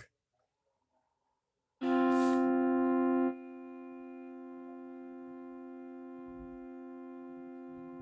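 Casio mini electronic keyboard sounding a held key. The tone starts sharply about two seconds in, is loud for a second and a half, then drops to a steady, quieter sustain that holds to the end.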